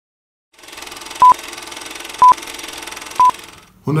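Three short, identical electronic beeps at one steady pitch, evenly spaced about a second apart, over a steady hiss, like a countdown.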